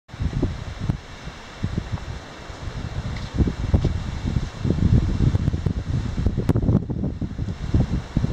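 Wind buffeting the microphone: a gusty low rumble that rises and falls unevenly.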